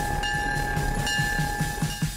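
Diesel locomotive idling, its engine throbbing about six times a second under a steady high whine.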